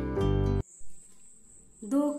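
Acoustic guitar background music that cuts off abruptly about half a second in, leaving a faint, steady high-pitched whine.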